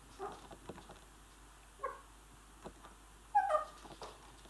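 Shih Tzu puppy whimpering: three short high whines, the last and loudest near the end, dropping slightly in pitch.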